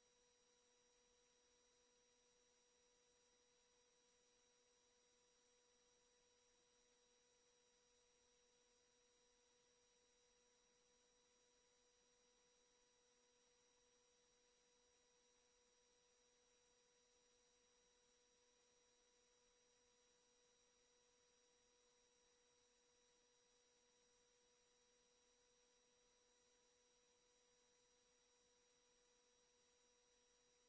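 Near silence: only a very faint, steady set of constant tones over low hiss, unchanging throughout.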